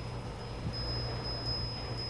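Quiet outdoor background: a steady low hum under a faint, thin high tone, with a few brief, faint high-pitched pings.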